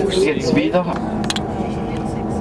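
Steady hum of a car running along the road, with a few words of speech in the first second and a couple of light clicks a little after.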